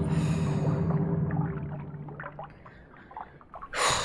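Horror film soundtrack: a sustained low note fades out about two and a half seconds in. It gives way to faint watery trickling and small drips, and a short, sudden rush of noise comes near the end.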